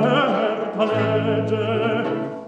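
A solo operatic bass voice sings an Italian-baroque monody line with vibrato. A low, steady continuo note sounds beneath it from about a second in.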